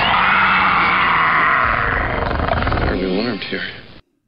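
Soundtrack of a film clip of a giant goose attacking a man, played loud from the presentation laptop: an animal cry mixed with music. It cuts off abruptly just before the end.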